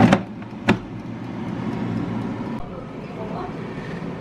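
Air fryer basket clicking into place, a second sharp click under a second later, then the air fryer's fan running steadily.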